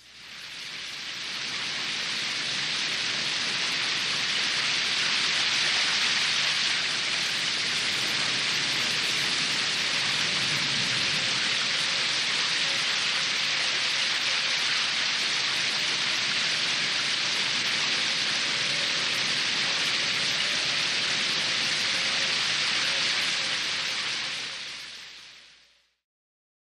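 A steady rain-like hiss with no beat or tune. It fades in over the first couple of seconds and fades out near the end.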